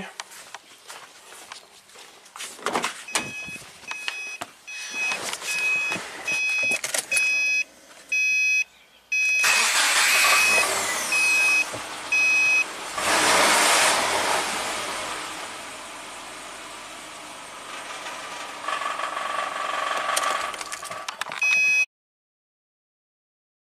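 2009 Subaru Forester: a dashboard warning chime beeps about twice a second, then about halfway through the engine cranks and starts, flares up and settles to a steady idle. The car is the known-good reference, running normally.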